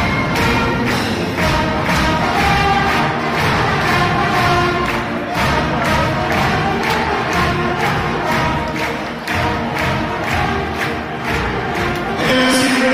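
A brass band (fanfare) playing a tune: held brass notes over a steady drum beat of about two strokes a second.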